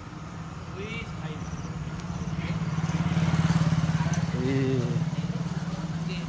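A motorcycle engine passing along the street: its drone grows louder to a peak about halfway through, then fades. Brief snatches of voices come through over it.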